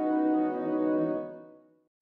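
Logo sting music: one long held horn-like note that fades out over the second half.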